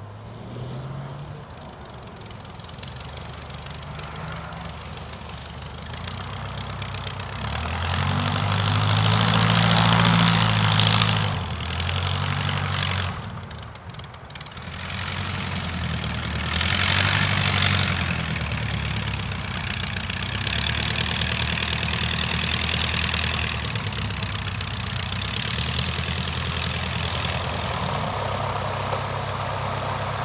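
De Havilland Tiger Moth biplane's four-cylinder Gipsy Major engine and propeller running at low level. The engine note swells and shifts in pitch as the aircraft passes, loudest about a third of the way in and again just past halfway, then runs on steadily.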